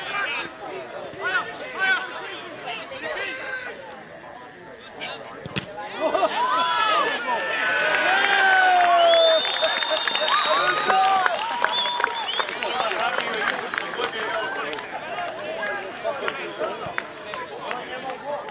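Football players and a small crowd shouting and cheering as a goal goes in: scattered calls at first, then about six seconds in a sudden rise of many overlapping high-pitched shouts that is loudest a few seconds later and then dies down.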